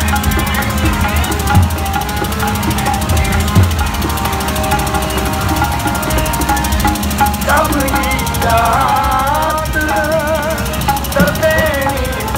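Sikh kirtan, devotional hymn singing with music, played over horn loudspeakers in a street procession, above a low steady hum. About halfway through a wavering sung line comes through clearly.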